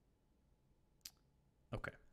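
Near silence with a single computer mouse click about a second in.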